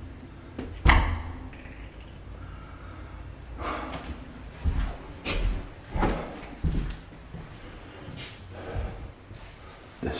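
A toilet stall door being handled: one sharp bang about a second in, then a run of duller knocks and thuds.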